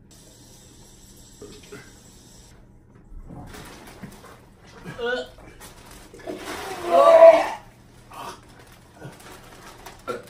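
A man gagging and retching as he vomits: a short gag about five seconds in, then a louder, longer retch about seven seconds in.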